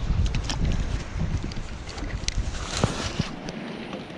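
Wind buffeting the microphone as a steady low rumble, with a few light clicks and taps from a spinning rod and reel being handled during a cast.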